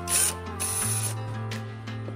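Cordless drill-driver driving a screw into a wooden board, running in two short bursts, the second longer at about half a second.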